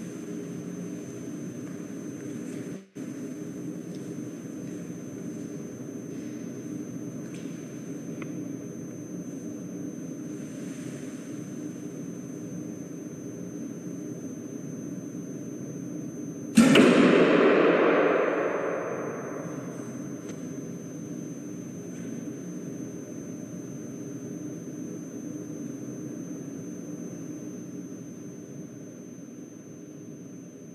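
A single arrow shot from a bow: one sudden sharp crack about halfway through, its echo dying away over about two seconds in a large bare room. A steady room hum runs underneath.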